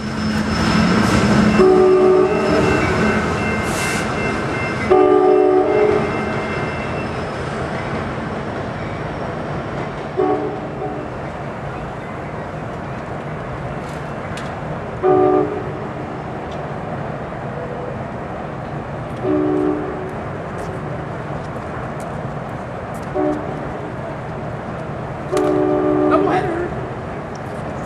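Locomotive air horn sounding a chord seven times, a few seconds apart: the first two and the last blasts about a second long, the rest short. Underneath is the steady rumble of a train running on the rails, louder in the first few seconds.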